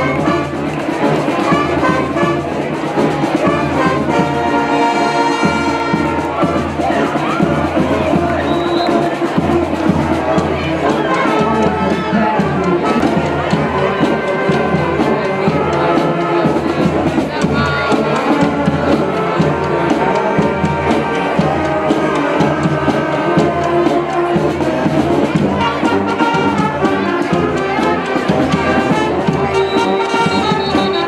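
Brass band music with trumpets and trombones over a steady drum beat, going on throughout.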